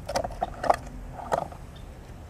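Small metal clip leads of a battery desulfator clicking and rattling as they are handled in gloved hands, with four short clicks, the loudest a little after half a second in.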